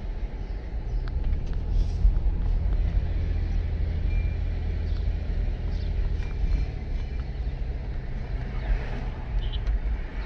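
A car driving along a street, heard from inside the cabin: a steady low rumble of engine and tyre noise.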